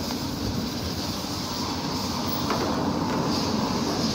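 Steady road traffic noise along a busy city street.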